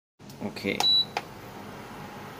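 Portable induction cooktop's control panel giving one short, high beep with a click as a key is pressed, followed by a second click a moment later.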